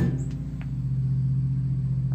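A steady low mechanical hum, with a single sharp click right at the start.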